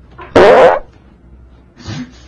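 A person's fart: one loud blast about half a second long, with a small dog lying on top of them. A shorter, quieter noise follows near the end.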